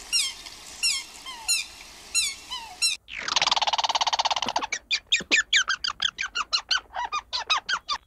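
A Canada goose gives a series of short, descending honking calls. After a cut about three seconds in, a red squirrel makes a buzzing rattle of about a second and a half, then a rapid run of sharp chirps, several a second, in its alarm chatter.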